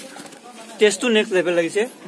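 A man speaking briefly, starting about a second in, against quieter background chatter.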